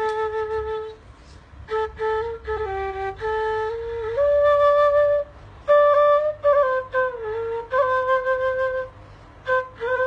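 Afghan tula, a wooden flute, playing a slow melody of held notes and small slides, breaking off for breath about a second in and again near the end.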